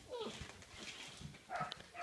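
Six-week-old Weimaraner puppies at play: a short falling yip right at the start and another brief yelp or whine about a second and a half in, over faint scuffling.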